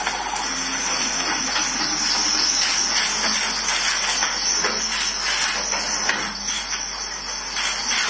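A steady, fairly loud hiss with faint, indistinct sounds underneath.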